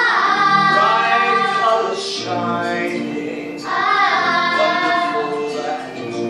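A children's choir singing, with long held notes in two phrases; the second phrase starts a little past halfway through.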